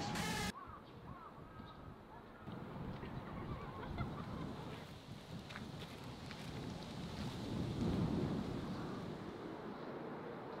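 Background music cuts off about half a second in, leaving outdoor lakeside ambience: a low rumble of wind on the microphone with a few faint bird-like calls.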